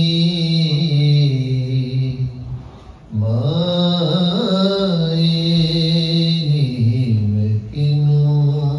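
A man singing a Sufi kalam in long, drawn-out held notes. He breaks for breath about three seconds in, then sings a wavering, ornamented run before holding the notes again.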